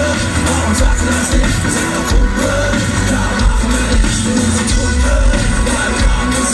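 A German hip hop group's live set played loud through a festival PA, with a heavy pulsing bass beat and a sung line over it, heard from within the audience.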